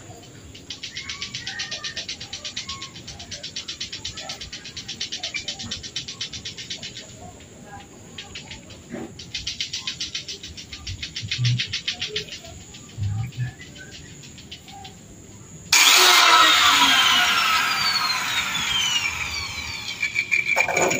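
Aerosol spray can shaken in bursts, its mixing ball rattling quickly, then, about three-quarters of the way through, a sudden loud hiss of spraying that keeps going with a faint whistle falling in pitch.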